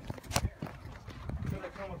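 A quick run of sharp knocks and clicks in the first half second, the loudest about a third of a second in, with a few more around a second and a half.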